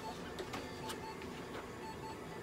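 An electronic device beeping a short double beep about once a second, steady and even, with a few faint clicks of handling in between.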